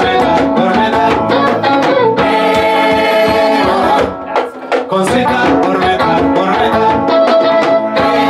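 Live Ethiopian traditional band music with singing, drums and string instruments. The music thins out briefly about halfway, then comes back in full.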